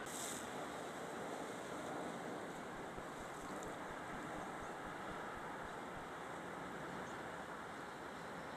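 Steady outdoor noise of wind and choppy sea waves on the shore, with wind buffeting the microphone. A brief hiss right at the start.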